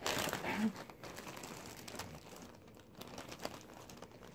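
A clear plastic bag full of pacifiers crinkling as it is handled, loudest in the first second and then a softer crackle with small clicks.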